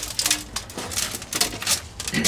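Hands rummaging through compost tipped from a potato grow bucket into a wheelbarrow, sifting out the potatoes: irregular rustling and scraping.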